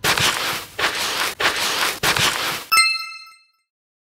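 Hissing noise in four short bursts, then a bright bell-like chime sound effect that dings once near the end and rings out briefly.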